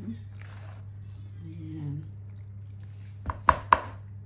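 Macaroni salad being worked in a plastic mixing bowl with a spatula and fork, then three sharp taps in quick succession near the end as the utensils knock against the bowl.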